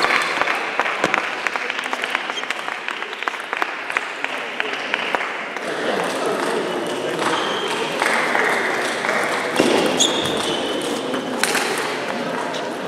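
Table tennis rally: the celluloid ball clicking sharply off rackets and the table in quick succession, over the voices and reverberant noise of a large sports hall.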